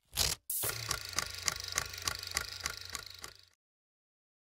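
Electronic end-card sting: a short whoosh, then a rhythmic synthetic pulse of about three ticks a second over a low hum, which cuts off half a second before the end.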